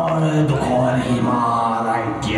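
A man's voice chanting in long, drawn-out notes that slide slowly in pitch, with music underneath.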